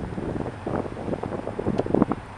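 5.7-litre Hemi V8 of a 2003 Dodge Ram idling, heard close to its dual exhaust tailpipes, with wind buffeting the microphone.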